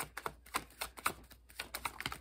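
A deck of tarot cards being shuffled by hand, an irregular run of light clicks and slaps as the cards are dropped from one hand into the other.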